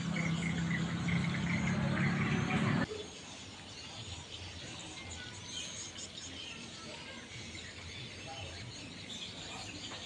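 A steady low hum that cuts off suddenly about three seconds in, leaving faint outdoor ambience of birds and insects chirping.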